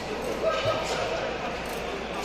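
Spectators chatting in a large ice hockey arena, with a couple of sharp knocks about half a second in and a lighter click shortly after.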